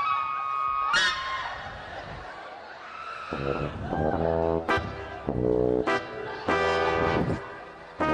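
Music from a live stage band: several long, steady notes in a brass-like tone, each about a second long, coming in about three seconds in after a single held high note at the start.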